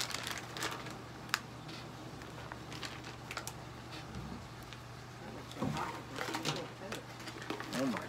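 Light handling noises: a paper plate lifted and a plastic jerky packet rustling and crinkling, with scattered small clicks. A low steady hum runs underneath, and faint murmured voices come in briefly around the middle and near the end.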